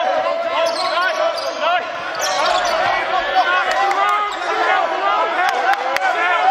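Basketball bouncing and sneakers squeaking on a hardwood gym floor during a drill: a constant overlapping chatter of short, shrill squeaks with sharp ball thumps among them, in a large echoing gym.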